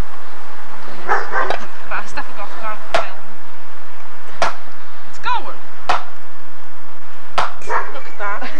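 Sharp knocks at irregular intervals, some in quick pairs, with short yelping calls of a dog between them.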